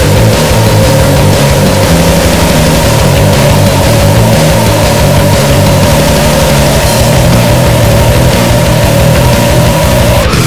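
Goregrind band playing a wall of heavily distorted, noisy guitar and bass over rapid low pulsing, with one steady high whine held over it that creeps slightly up in pitch.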